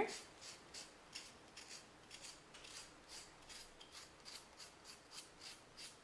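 Professional-grade nail file sanding the paper-covered edge of a wooden cut-out in quick, even back-and-forth strokes, about three a second, faint. The file is taking off the trimmed paper's excess so it sits flush with the wood edge.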